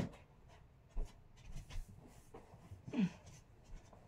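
Faint rustling of bedding and soft handling knocks as a bed is made, with a light knock about a second in and a brief low voice sound with falling pitch about three seconds in.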